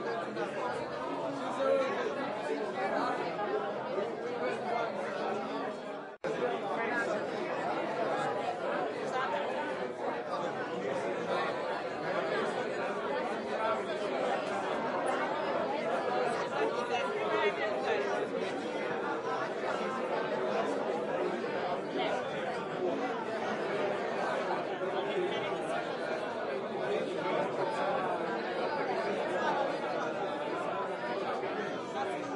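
Many people talking at once in a room: indistinct, overlapping party chatter with no single voice standing out. The sound cuts out for an instant about six seconds in.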